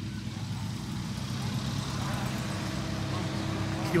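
A car engine idling with a steady low hum, with faint voices in the background.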